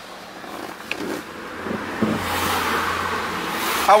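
Convertible car driving with the top down: wind and road noise over a low engine hum, growing louder through the second half.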